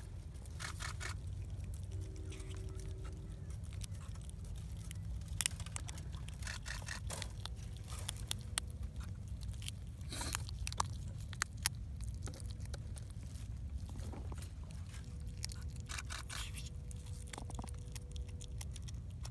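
Black mink chewing and biting into a valley garter snake: irregular crunching clicks and scrapes throughout, over a steady low rumble.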